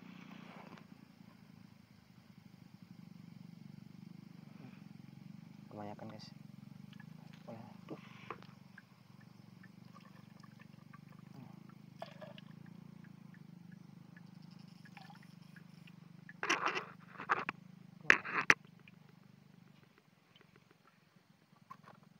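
A plastic pesticide bottle and its cap are handled while liquid is poured from the cap into a bucket of foamy solution, over a steady low hum. A cluster of sharp knocks and clatters about sixteen to eighteen seconds in is the loudest sound.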